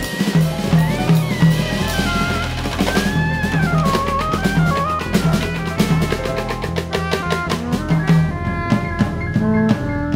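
A jazz quartet plays live: soprano saxophone, piano, upright bass and a drum kit. The drums play busy, dense strokes that grow quicker and thicker in the second half. Over them a high melody slides and bends in pitch during the first few seconds, with a pulsing bass line underneath.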